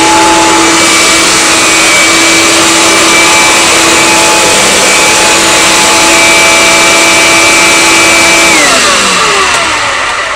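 Eureka Powerline Gold 12-amp hard-bag upright vacuum running loudly and steadily, with a constant motor whine. About eight and a half seconds in it is switched off, and the motor spins down with a falling pitch.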